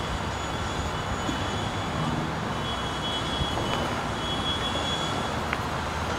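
Steady outdoor urban background noise: a continuous low rumble and hiss with a faint high tone, and a small click about five and a half seconds in.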